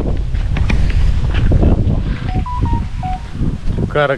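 Wind buffeting the camera microphone, a loud uneven low rumble, with a few short faint tones about halfway through.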